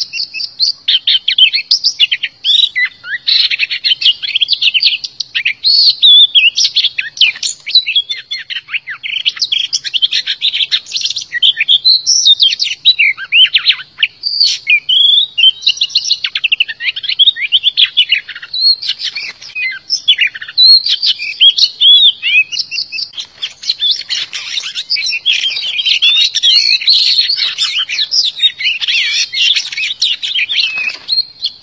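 Oriental magpie-robin singing a loud, rapid run of varied whistled phrases and chattering notes, with only brief pauses. This is the decoy song used to lure wild magpie-robins and to stir caged ones into singing.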